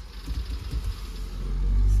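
Low vehicle rumble that swells about one and a half seconds in.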